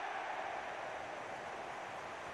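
Football stadium crowd cheering a goal, a steady roar that slowly fades.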